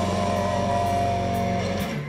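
Live rock band music led by electric guitar, a chord held steady and then cut off near the end.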